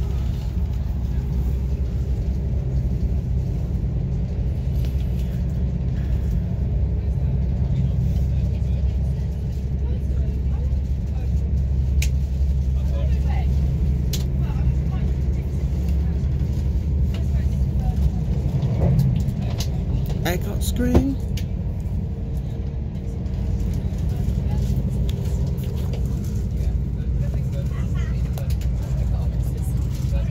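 Steady low rumble of a loco-hauled passenger coach running along the track, heard from inside the carriage. Faint voices come in around two-thirds of the way through, with a single sharp knock just after.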